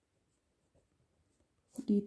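Faint, light strokes of a pen writing on paper, followed near the end by a voice beginning to speak.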